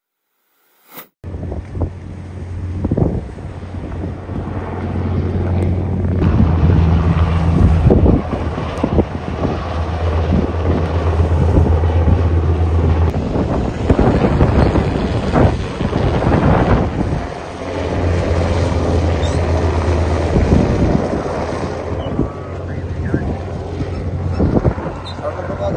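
Wind buffeting the microphone at sea, a rough gusty rush starting about a second in, over a steady low hum that fades out past the middle and returns a few seconds later.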